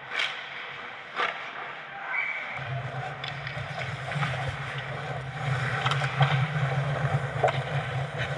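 Ice hockey play heard on the ice: sharp clacks of stick and puck, one just after the start and a louder one about a second in, with smaller knocks scattered through over a wash of skate and rink noise. A steady low hum comes in about two and a half seconds in.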